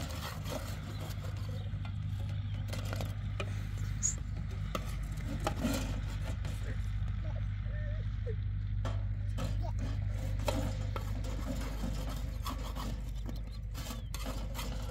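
A metal utensil scraping and tapping on a large metal griddle tray as flat cakes are turned, with occasional clinks of metal pots and lids, over a steady low hum.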